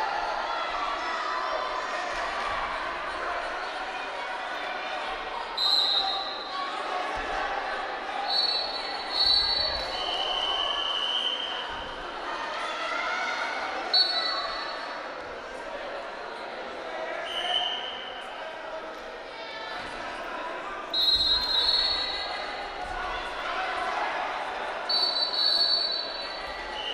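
Wrestling shoes squeaking on the mat: a dozen or so short, high squeaks in scattered pairs as the wrestlers scramble, with a few dull thumps of bodies on the mat. Voices echo in the large hall throughout.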